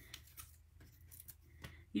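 Faint, scattered small clicks and rustles of die-cut paper pieces being slid and pressed into position by hand on a gridded craft mat.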